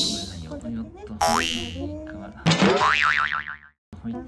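Cartoon-style sound effects added in editing. A shimmering effect fades out in the first half second, a quick rising whistle-like glide comes about a second in, and a wobbling boing follows about two and a half seconds in, cutting off abruptly just before the end. Quiet voices run underneath.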